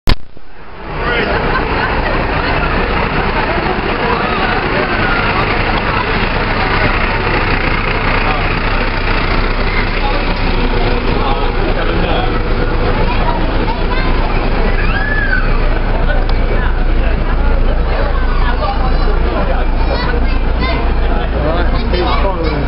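A fire engine's engine running steadily at low revs as it rolls slowly past, under people chatting nearby. There is a sharp knock at the very start.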